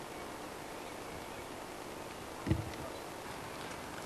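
Steady background hiss with a single short, low thump a little past halfway through.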